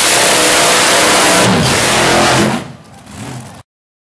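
Supercharged dragster engine revving hard during a burnout, its rear slick spinning in smoke on the pavement. The sound drops away about two and a half seconds in and cuts off suddenly shortly after.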